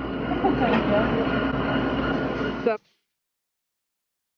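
Busy kitchen room noise: a steady hum and rumble with faint voices in the background, cutting off abruptly about three quarters of the way in.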